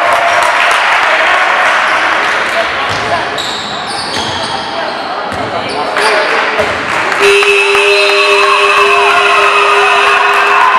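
Basketball game in a gym: spectators shouting over a ball bouncing on the hardwood floor. About seven seconds in, a long steady horn sounds and holds, the buzzer ending the game, while the crowd cheers.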